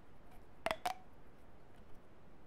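Two quick sharp taps or clicks on a small hard object, about a fifth of a second apart, each with a brief ring.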